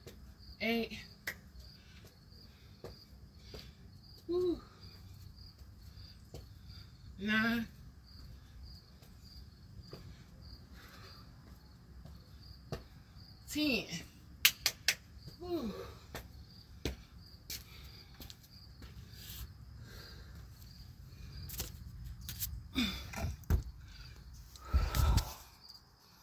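Crickets chirping steadily in the background, with a woman's short falling vocal sounds now and then as she exercises on the steps. A few sharp clicks come in the middle, and loud low knocks near the end as the phone is picked up.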